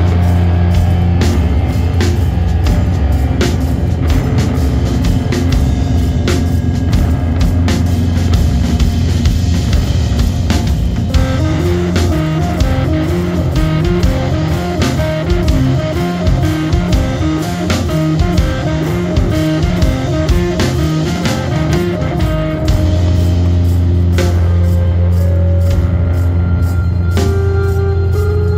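Doom metal band playing: heavily distorted electric guitar and bass on a slow, low riff with drums. About halfway through the riff breaks into a busier run of moving notes, and near the end it returns to heavy held low chords.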